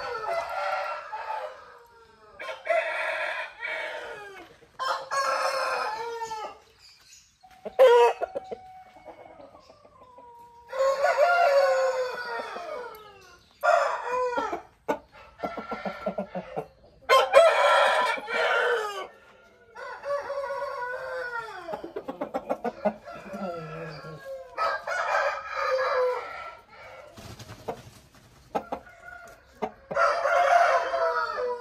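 Aseel roosters crowing again and again, a crow about every two to three seconds, with shorter calls in between.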